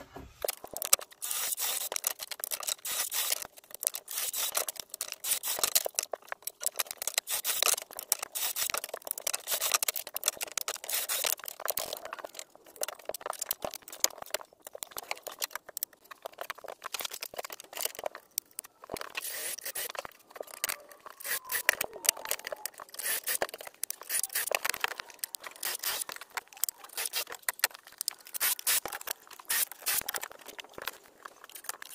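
Cordless drill with a brad point bit boring connector holes in pine through a clamped drilling jig, with scraping and knocking as boards and toggle clamps are handled. The noise is choppy and full of short clicks.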